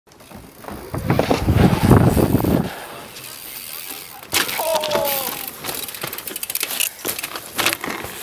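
A deep rumbling intro sound effect for about a second and a half. Then outdoor noise of dirt jumping: a short shouted call from the rider or an onlooker, followed by scattered clicks and rattles of the bike.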